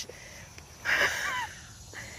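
A person's breathy exhale, like a heavy sigh, about a second in and lasting about half a second, with a faint falling pitch.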